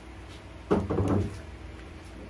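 A sharp knock followed by a short clatter about two-thirds of a second in, lasting about half a second: fired ceramic pieces being handled and set down while a kiln is unloaded.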